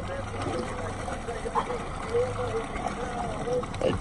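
Boat engine running with a steady low hum under wind and water noise, with faint voices now and then.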